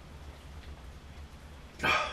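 A man's short, loud grunt of effort about two seconds in, as he pulls a resistance band through a face-pull rep, over a low steady hum.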